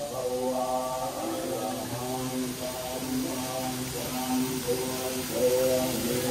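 Slow chanting-style vocal music: long held notes stepping in pitch over a steady low drone.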